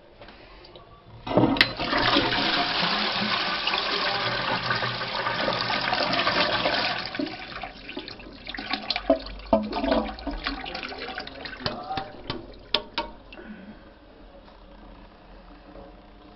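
Toilet flushed from its cistern: a sharp click, then a sudden loud rush of water about a second in that runs steadily for about six seconds. It then turns irregular and splashy as the flush ends, fading away a couple of seconds before the end.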